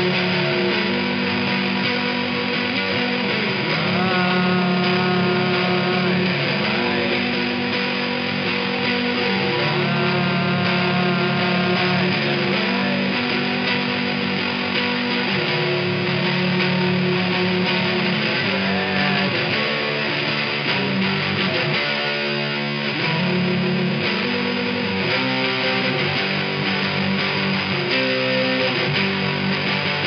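Electric guitar with a fuzz tone, played through an amplifier: chords held and changing every couple of seconds, with a few higher notes ringing over them.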